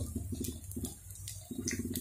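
Gram-flour batter sizzling softly in hot oil on a tawa as it is spread thin by hand, with a low steady hum underneath.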